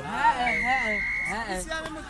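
Spectators shouting and yelling excitedly, with one high held note about half a second in lasting nearly a second.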